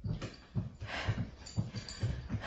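A woman breathing hard while stepping on a Sunny mini stepper: two heavy breaths, one near the start and one about a second in, over a steady run of low thuds from the stepper's pedals.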